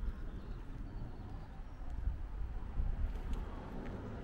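Outdoor background noise: a low, uneven rumble with a few faint clicks about three seconds in.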